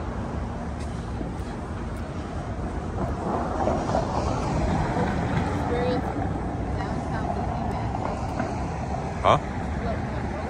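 Downtown street noise: a steady low rumble of passing traffic, with indistinct talking in the middle.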